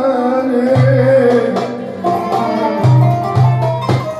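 Live Middle Eastern ensemble music: violin and qanun playing a melody over a hand drum's deep ringing strokes and sharp higher taps.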